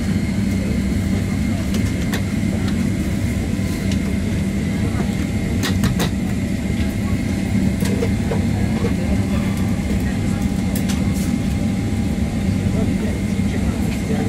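Steady low hum of a Boeing 767's passenger cabin before takeoff, air and machinery droning without a break. A few light clicks sound over it, two close together about six seconds in.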